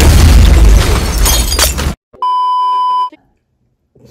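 Movie explosion sound effect: a loud blast with shattering and crashing debris for about two seconds that cuts off suddenly. Then a steady high-pitched beep lasts just under a second.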